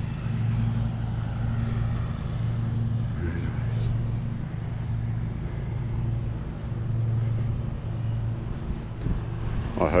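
Lawn mower engine running at a steady pitch, a low hum that swells and eases every second or two.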